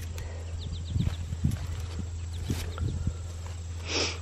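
Beets being pulled and handled: soft low thumps and rustling of leaves and soil, over a steady low hum.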